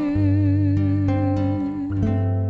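Female vocalist holding one long note with steady vibrato, hummed with lips nearly closed, over sustained acoustic guitar.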